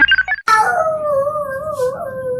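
Brief tail of plucky background music, then a cut to a comic dog-howl sound effect: one long, wavering howl that slides slowly lower in pitch.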